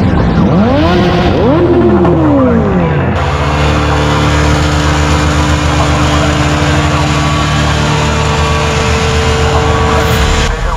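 Motorcycle engines revved hard several times in quick succession, the pitch sweeping up and down. About three seconds in, this gives way to a motorcycle held at steady high revs during a rear-tyre burnout, the spinning tyre hissing against the road.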